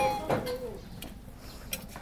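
A brief, quiet voice near the start, then a low steady background with a few faint clicks.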